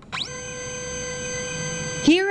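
Epson Perfection V600 Photo flatbed scanner running a scan: its carriage motor whine rises in pitch at the start, then holds a steady, even whine.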